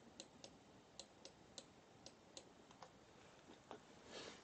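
Near silence with about a dozen faint, irregularly spaced clicks, made while a letter is written onto the on-screen worksheet with a computer input device.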